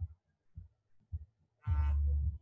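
A man's voice in a pause between phrases: a drawn-out hesitation sound, like a held 'uhh', starting near the end, after a near-quiet stretch broken by a few faint low bumps.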